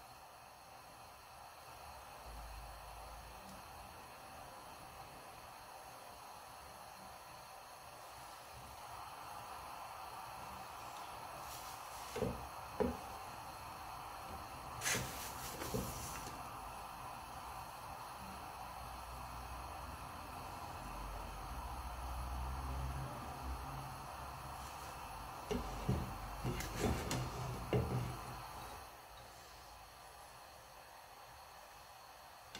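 Low steady hiss of flatbread cooking in a dry pan on a gas stove. A few soft knocks and taps come around the middle and again in a cluster near the end as the bread is pressed and turned in the pan.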